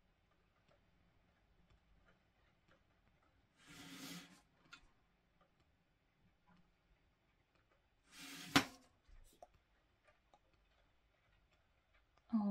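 A fineliner pen faintly ticking and scratching on cold-press watercolour paper. Twice a brief rustling slide as the sheet is turned on the table; the second ends in a sharp click.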